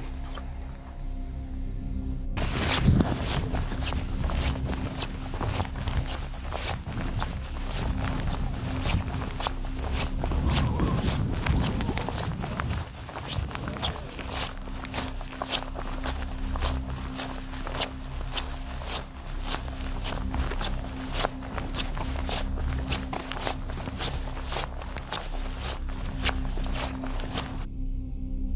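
Footsteps walking at a steady pace, each step a short crunch, over a steady low music drone.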